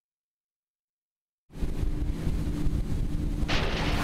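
Silence for about a second and a half, then a wakeboard tow boat's engine starts up in the mix abruptly, running steadily with wind on the microphone and rushing water. A hiss of spray grows louder near the end.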